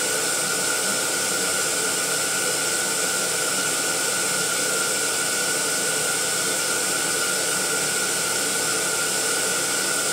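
Electric balloon inflator running steadily, a constant whine over rushing air, as the row of latex balloons fills.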